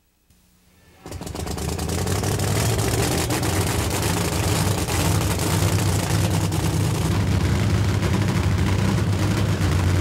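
Supercharged nitro funny car drag racing engine running loud. It comes in suddenly about a second in and holds steady as a deep rumble with a rapid crackle.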